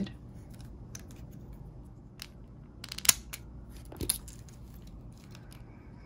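Light plastic clicks and taps as a Tamiya Mini 4WD's plastic chassis is handled and a plastic part is unclipped, with two sharper clicks about three and four seconds in.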